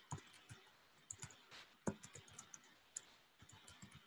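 Faint, irregular clicking of a computer keyboard and mouse, several clicks a second, with a louder click about two seconds in.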